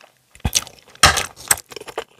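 Chopsticks clicking and scraping against a frying pan while gathering sticky, cheese-coated ramen noodles, in a handful of sharp clinks and knocks close to the microphone.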